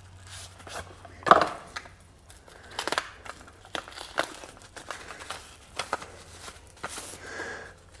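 Thin plastic bag crinkling and rustling in scattered, irregular crackles as it is pulled off a boxed case by hand, with a louder rustle about a second in.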